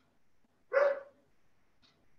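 A dog barking once, briefly, about three-quarters of a second in, picked up through a participant's microphone on a video call.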